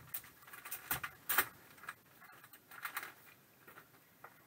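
Hard plastic graded-card slabs clicking and tapping against each other as they are handled, with a plastic sleeve rustling. The clicks are short and irregular, bunched in the first second and a half and again about three seconds in.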